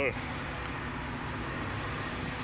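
Steady low rumble of a car engine running nearby.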